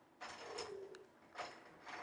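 Faint rustling and a single light click, small handling noise in a lull between words.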